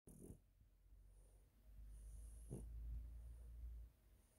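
A French bulldog breathing faintly through its nose, with a couple of short snuffles, one near the start and one about halfway.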